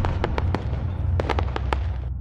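Logo-animation sound effect: a steady low rumble with about ten sharp pops scattered over it.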